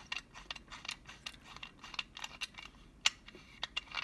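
Stainless steel hip flask's hinged screw cap being turned open by hand: a run of small metal clicks and ticks, the sharpest about three seconds in.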